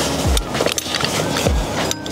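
Background music with a kick-drum beat.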